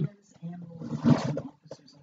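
A person's voice making a short, rough, low vocal sound lasting about a second, followed by a few faint short sounds near the end.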